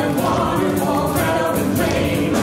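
Many voices singing together in chorus over backing music with a steady beat.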